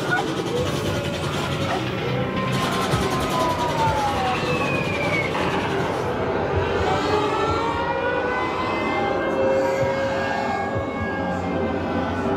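Haunted-maze soundscape: a loud, unbroken wash of droning noise with several wailing tones gliding up and down through it.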